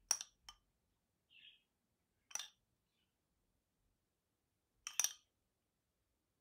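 Metal spoon clinking against a glass bowl of melted chocolate: a few sharp, separate clinks, a pair at the start, one about two and a half seconds in and one near the end.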